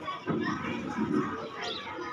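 Many children chattering at once, their voices overlapping into an unintelligible hubbub.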